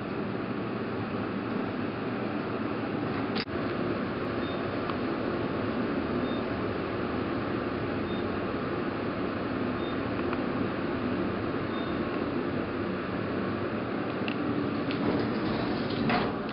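Elevator car travelling down: a steady hum and rumble of the moving car, with a single knock about three seconds in and a faint short high beep about every two seconds.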